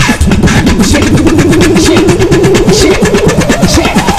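Beatboxing: fast vocal drum sounds with a sustained, wavering low vocal tone held from about a second in and rising in pitch near the end.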